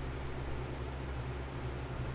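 Room tone in a pause between speech: a steady faint hiss with a low hum, and no distinct event.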